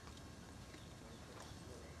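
Faint, scattered clip-clop of the ceremonial carriage horses' shod hooves shifting on the paved road: a few light knocks over a low background haze.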